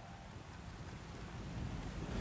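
A quiet break in the song: a faint low rumble and hiss, with no voice or clear instrument, swelling slightly toward the end.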